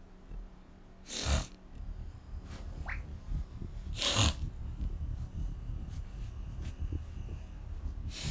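Two short, sharp breaths through the nose close to the microphone, about three seconds apart, over a low rumbling background.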